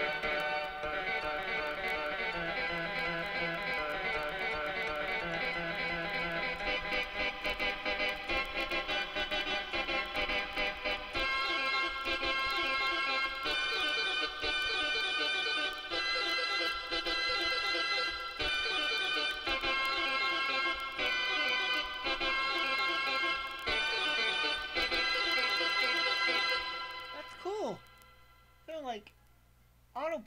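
Casio CTK-3000 keyboard played by hand, its voice a short, low-fidelity sample recorded on the keyboard. Quick repeated notes for about the first ten seconds, then bright held chords changing every second or two, dying away just before the end.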